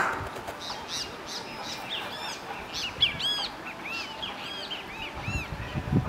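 Small birds chirping in a quick series of short, arching high chirps, with a thump at the start and another about three seconds in.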